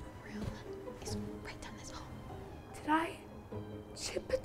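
Soft background music under hushed whispering, with a girl's pained whimper about three seconds in.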